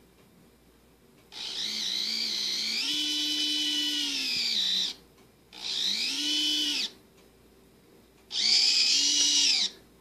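KMS free-spool RC winch's small electric motor and gearbox whining as it winds in and lifts a load, in three runs: a long one of about three and a half seconds, then two shorter ones. In each run the pitch rises, holds and falls as the variable-speed controller ramps the motor up and back down.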